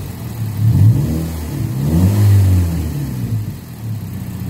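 Mazda MX-5 Miata's four-cylinder engine revved twice in place with no load, the pitch rising and falling each time and settling back toward idle near the end.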